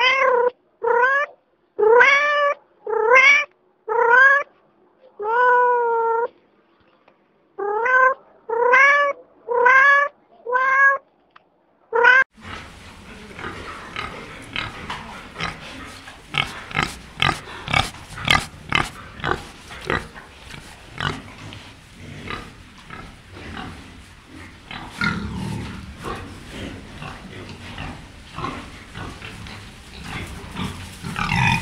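A domestic cat meowing over and over, about once a second, each meow rising in pitch, with a short pause midway. About twelve seconds in, the sound changes to a pig snuffling and grunting as it roots its snout in the dirt, full of short clicks and snorts.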